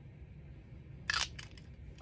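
A single short plastic click about a second in, as the cap goes back onto a TWSBI fountain pen, with a smaller tick just after; otherwise faint room noise.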